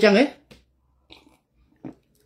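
A man speaking briefly, then breaking off into a pause broken by a few faint small clicks, likely mouth or movement noises.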